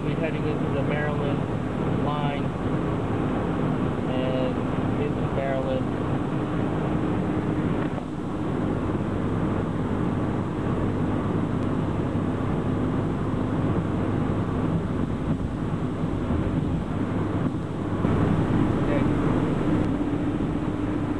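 Steady drone inside a moving car's cabin: engine and road noise, with air rushing from an air-conditioning vent right beside the microphone.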